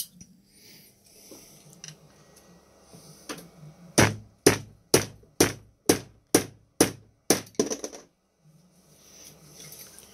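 A run of about nine sharp knocks, roughly two a second, then a few lighter ones: the plastic cell holder of a Milwaukee M18 battery pack being struck to knock its tight 18650 cells loose.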